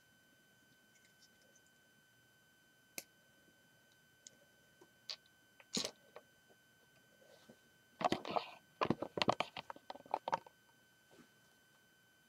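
Handling noise: a few isolated sharp clicks and taps, then a dense run of clattering clicks lasting about two and a half seconds, like hard plastic pieces being picked up and set down.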